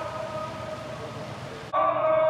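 Amplified male voice chanting through a public-address loudspeaker on long, steady held notes, faint at first over open-air background noise. It becomes suddenly much louder near the end.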